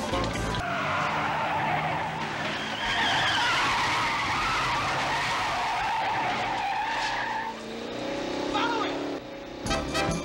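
Car tyres squealing in a long, wavering skid for about seven seconds, followed by a lower engine note rising briefly. Music plays at the very start and comes back just before the end.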